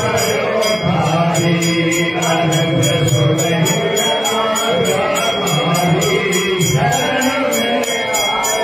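Temple aarti: men's voices chanting a devotional hymn together, with ringing metal percussion struck in a quick steady beat, about three strikes a second.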